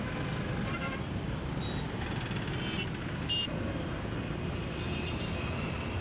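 Steady road traffic noise, with a few short, high vehicle horn toots.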